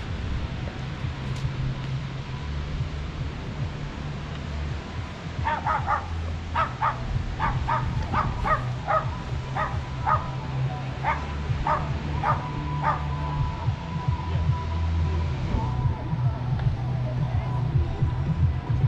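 A small dog yapping: a quick run of about fifteen short, high barks, roughly two a second, starting about five seconds in and stopping around thirteen seconds. Music with a steady bass line plays underneath.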